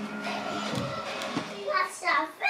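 Faint steady hum with light rustling, then a short, high-pitched baby vocalisation near the end.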